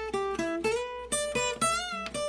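Acoustic guitar played as a single-note lead lick: a quick run of about eight picked notes, with a couple of them bent slightly upward in pitch.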